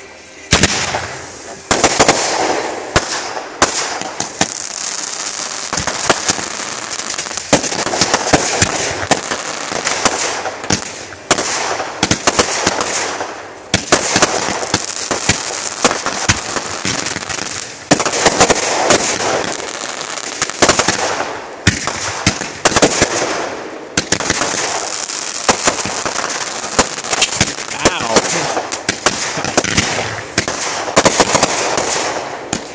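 Backyard consumer fireworks finale: many shots fired in quick succession, sharp launch pops and bursts over a near-continuous hiss of crackling effects, with only brief lulls between volleys.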